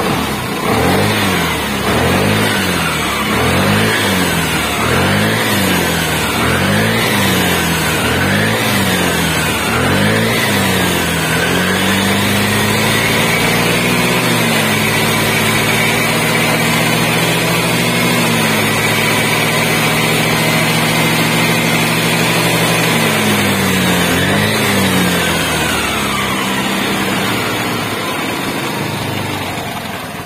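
Vespa Primavera automatic scooter engine revved in about eight quick blips roughly 1.3 seconds apart, then held at high revs for about twelve seconds before dropping back to idle near the end. It is a high-rpm test of the charging system after a new regulator-rectifier was fitted; the battery voltage holds at about 14 V.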